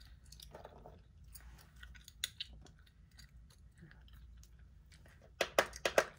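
Close-miked gum chewing with small wet clicks and smacks, and a quick run of louder clicks near the end.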